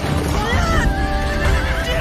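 A horse whinnies about half a second in, over a dramatic orchestral score with held tones and a continuous low rumble underneath.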